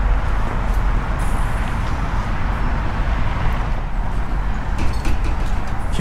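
Steady street traffic noise with a strong low rumble and no distinct events.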